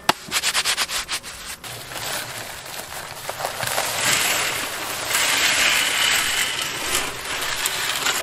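Dry concrete mix pouring out of a bag into a steel drum that holds standing water: a steady rushing hiss that builds over a few seconds and stops suddenly at the end. It opens with a sharp knock and a quick run of crackles in the first second or so.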